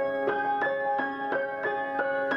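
Upright piano playing a classical piece, notes and chords struck about three times a second and ringing into one another.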